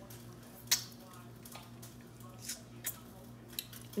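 A handful of small sharp clicks and smacks from people eating pineberries, the loudest under a second in, over a steady low hum.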